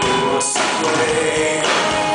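Live rock band playing with a male lead vocal over electric guitar and drums, heard from the audience. Voice and instruments sustain held notes, and a bright cymbal-like wash comes in about half a second in.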